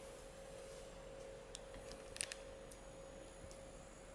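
A few faint clicks and taps of a smartphone being handled and tapped, with a small cluster about two seconds in, over a steady faint hum in a quiet room.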